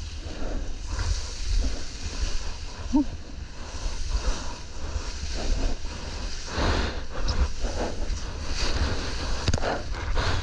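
Whitewater foam rushing and splashing around a surfboard, with wind buffeting the microphone in a low rumble. The splashing grows heavier in the second half, with several louder surges.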